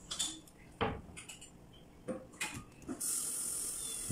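A few faint, scattered taps and knocks of a kitchen knife and ingredients being handled on a wooden cutting board, followed by a steady faint hiss in the last second.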